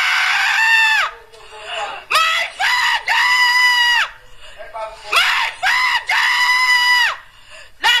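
A person screaming in panic as a house burns: a run of long, high-pitched cries, each about a second long, with short breaks between them.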